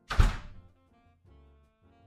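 A door shutting with a single loud thunk, over soft background music.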